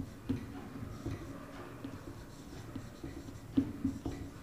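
Marker pen writing on a whiteboard: faint, scattered short strokes and taps as a word is written, with a slightly louder stroke near the end.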